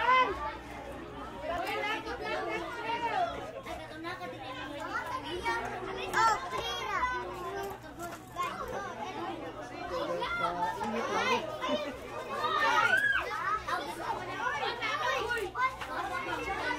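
A crowd of children chattering and calling out over one another, many young voices at once.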